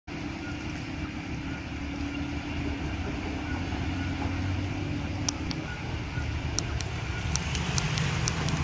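Heavy Mercedes-Benz truck's diesel engine running steadily as the truck wades through deep floodwater, with the water rushing around it, growing slowly louder as it nears. Sharp clicks come in over the second half.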